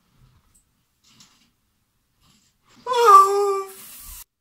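Near silence, then about three seconds in a young woman lets out one drawn-out wordless whine, about a second long and falling slightly in pitch.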